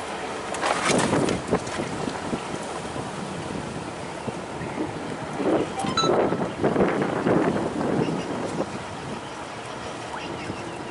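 Wind buffeting the microphone over choppy river water. There is a louder rushing surge about a second in and again from about five to eight seconds in.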